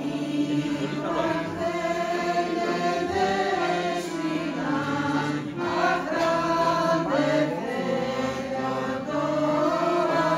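Women's choir singing together with accordion accompaniment, in long held notes over a steady low accompaniment.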